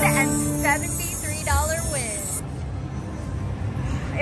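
IGT Rembrandt Riches video slot machine playing its bonus-win music at the end of the free spins, with a bright shimmering sparkle over the first two seconds or so before it dies down.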